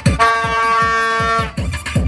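A plastic party horn blown in one steady note for about a second, over loud dance music with a deep, thudding bass-drum beat.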